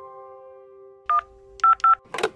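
A sustained musical chord fading out, then three short telephone keypad (DTMF) beeps: one about a second in and two in quick succession near the end.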